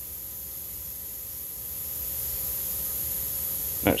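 Steady hum and hiss of a CNC vertical machining center standing idle between program runs, with a faint steady tone and no axis moves or clicks.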